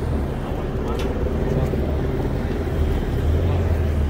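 Steady low rumble of street traffic with indistinct voices around, and one short sharp click about a second in.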